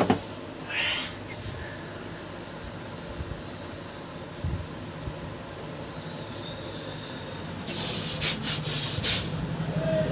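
A motor vehicle engine running, a steady low hum that grows louder in the last two seconds. A few sharp knocks come about eight to nine seconds in.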